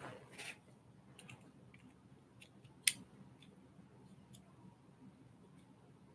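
Faint, scattered clicks of small plastic model-kit parts being handled and fitted, with one sharp click about halfway through.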